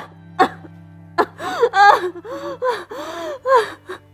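A woman crying: a gasping breath about half a second in, then a run of sobbing cries that rise and fall in pitch, over soft background music.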